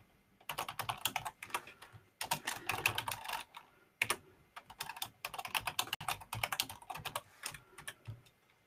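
Computer keyboard typing in quick runs of keystrokes, broken by short pauses.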